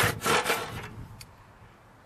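Handsaw cutting through a timber window sill in quick strokes that die away about a second in as the offcut comes free. A single light tick follows.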